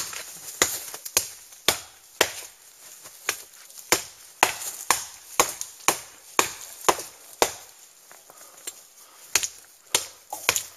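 A Cold Steel Trailmaster, a heavy carbon-steel survival knife, chopping a notch into the trunk of a dead quaking aspen. Sharp blade strikes on wood come about two a second, with a pause of under two seconds near the end.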